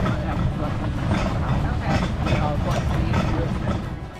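Steady low rumble of a wheeled dog-sled cart rolling along a dirt trail behind a running sled-dog team, with faint voices over it.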